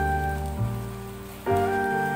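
Slow, soft instrumental music of long held notes and chords, with a new chord swelling in about three quarters of the way through, over a light, steady patter of rain.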